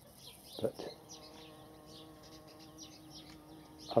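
Large bumblebee buzzing in flight: a steady low hum that starts about a second in.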